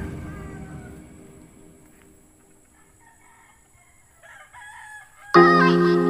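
Background music fading out, then a faint rooster crowing about four seconds in. Music starts again suddenly and loudly near the end.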